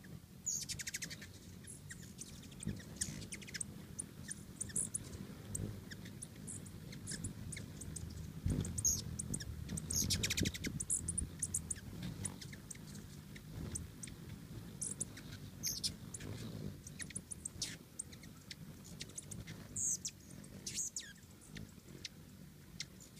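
Several hummingbirds at a feeder giving many sharp, high chip calls and quick squeaky chatters. Under the calls is the low hum of their wings as they hover close by, loudest around the middle.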